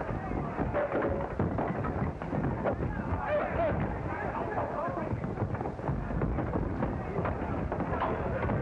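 Indistinct voices over a busy, noisy background with many small knocks.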